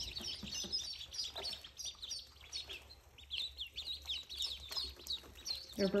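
A brood of ducklings peeping continually, many short, high chirps overlapping, each dropping in pitch.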